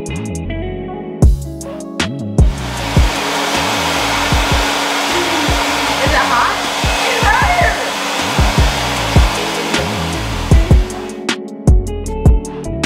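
Handheld hair dryer blowing steadily, coming in about two seconds in and stopping shortly before the end, while curly hair is being blow-dried and combed. Background music with a beat and plucked guitar plays underneath.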